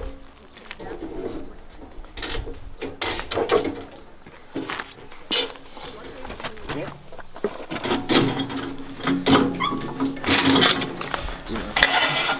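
Indistinct talk between workers, with scattered sharp metallic clinks and knocks as rolls of barbed wire are lifted and set onto a wire dispenser's steel spindles.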